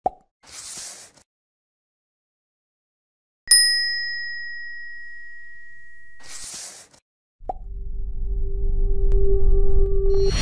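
Subscribe-button sound effects: a mouse click, a short whoosh, then a bell ding about three and a half seconds in that rings out for about three seconds. A second whoosh and click follow, and a rumble with a held tone swells over the last couple of seconds.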